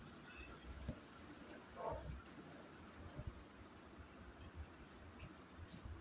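Faint steady high-pitched insect trilling, with a brief soft rustle about two seconds in.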